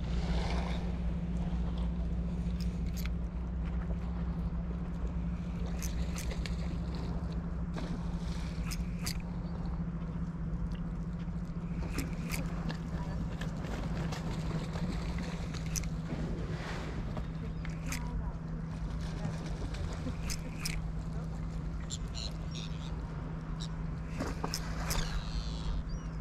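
Steady low hum of a running motor, with scattered sharp clicks and ticks over it.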